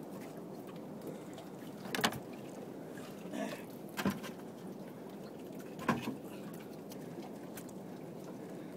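Knocking and handling noises from a large sea bass being worked over in a small open boat: three sharp knocks about two, four and six seconds in. Beneath them is a steady rush of sea water and wind.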